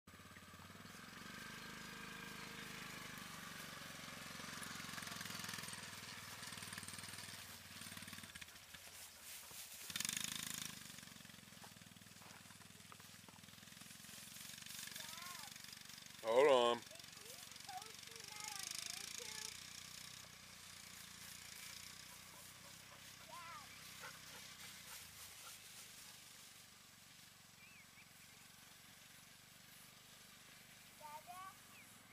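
ATV engine running steadily at low speed. Partway through there is one short, loud, wavering call.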